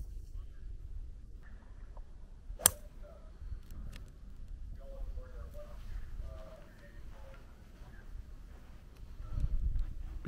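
A single sharp crack of a golf club striking a ball off the tee, about two and a half seconds in, over a steady low rumble of wind on the microphone.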